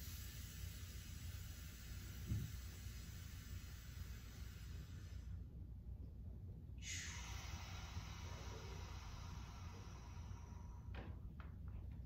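A person breathing slowly and faintly through the mouth and nose in a diaphragmatic, belly-first breath: a long breath of about five seconds, a short pause, then another long breath of about four seconds. A small soft thump comes about two seconds in.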